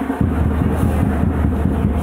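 Loud drumming accompanying a lezim dance, booming and distorted on the microphone, with the metal jingle of the dancers' lezim over it.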